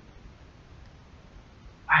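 Faint steady room noise, then a short exclaimed "wow" from a voice near the very end.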